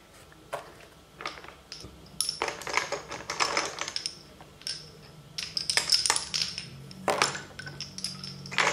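Lace bobbins clicking against one another in several quick clusters as pairs are crossed and twisted in bobbin lace.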